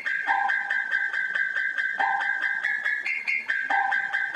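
Hip-hop type beat instrumental in a stripped-down stretch: a high-pitched melody loops, with a lower note coming back about every second and a half to two seconds, and no bass underneath.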